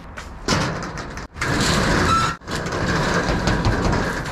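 Corrugated steel roll-up storage unit door being pushed up open, its slats rattling and clattering as it rolls, in three pushes broken by short pauses about a second and two and a half seconds in.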